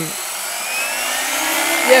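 Goblin 570 electric RC helicopter spooling up on the ground: the Scorpion brushless motor whine and main-rotor noise climb steadily in pitch and grow gradually louder.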